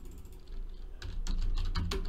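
Typing on a computer keyboard: a few light key clicks at the start, then a quick run of clicks in the second half, over a low steady hum.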